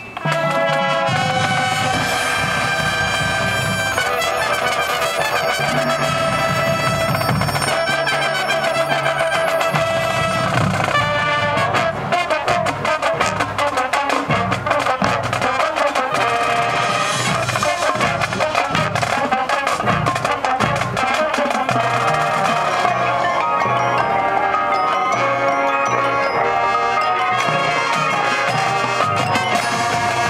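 Marching showband playing at full volume: brass and drums with front-ensemble mallet percussion, the whole band coming in together at once. From about twelve seconds in the drum strokes grow denser.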